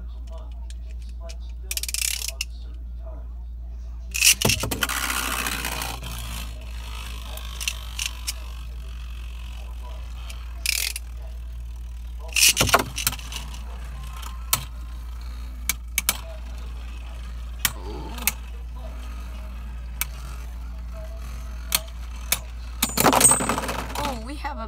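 Beyblade Burst tops are launched with ripcord launchers into a plastic stadium and spin, scraping loudly on the floor at first. Sharp plastic clacks follow at irregular intervals as they hit each other and the walls. Near the end there is a louder clatter as one top bursts apart into its pieces, a burst finish.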